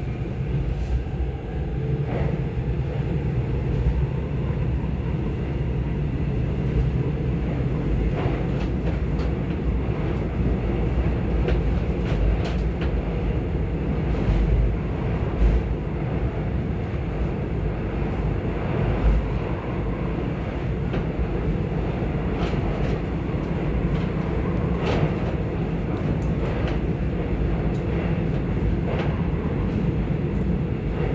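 Korail Class 351000 electric subway train running through a tunnel, heard from inside the carriage: a steady low rumble with scattered faint clicks and knocks from the wheels and car body.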